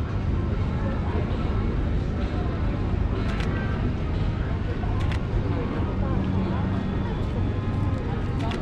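Busy outdoor street ambience: a steady low rumble with distant voices of passers-by, and a few short sharp clicks about three and five seconds in.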